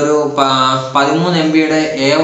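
A man's voice speaking in Malayalam in long, drawn-out syllables.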